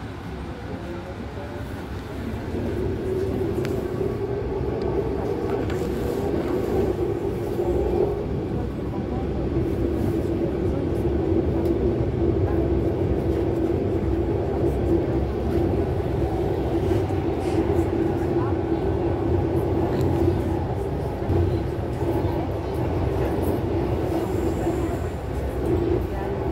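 RER A commuter train running, heard from inside the carriage: a continuous rumble of the moving train with a steady low hum. It grows louder over the first few seconds and then holds steady.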